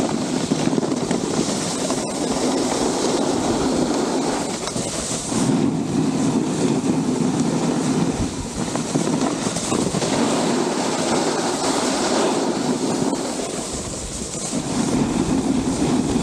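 Snowboard sliding and scraping over groomed snow, swelling and easing in long stretches as the rider moves from turn to turn, with wind rushing over the action camera's microphone.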